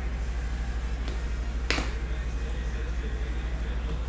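Trading cards being handled and flipped through by hand, with one sharp card snap a little before halfway and a fainter click before it, over a steady low hum.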